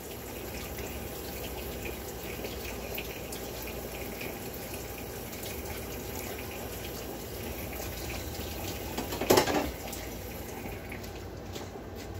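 Steady rushing noise like running water from a tap, with one short louder sound about nine seconds in.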